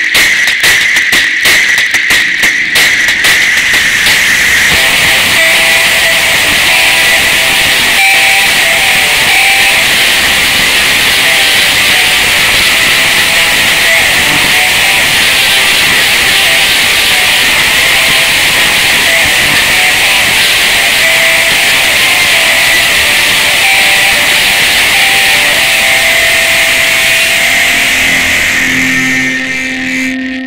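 Extremely loud, heavily distorted and clipped logo jingle audio, an 'ear bleed' edit: a harsh wall of noise with a steady high whine through it. It is choppy for the first few seconds, then continuous, and it fades slightly just before it cuts off at the end.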